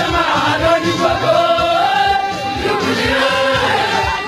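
A choir singing church music, voices sustained together over a steady low beat.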